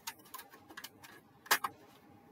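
Light clicks and taps of a stiff white card frame being handled and turned over, with the sharpest click about one and a half seconds in.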